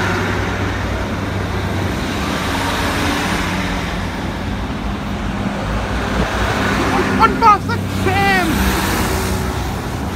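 Northern diesel multiple unit, a Class 150 coupled to a Class 156, idling at the platform with a steady low engine hum.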